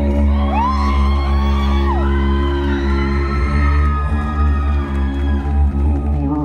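Amplified vocal percussion from an a cappella beatboxer: a sustained low bass drone with held tones above it, and higher sliding vocal tones that rise, hold and fall over it in the first half.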